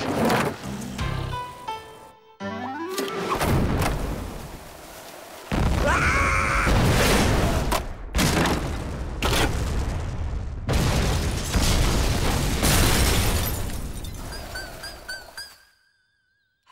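Cartoon soundtrack of music and cartoon explosion effects: from about five seconds in, several loud explosion booms with rumbling crashes follow one another, then die away near the end.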